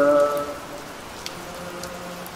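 Steady rain falling on a wet paved surface, with scattered individual drop splashes. The last held note of the chanted zikir line fades out about half a second in, leaving the rain alone.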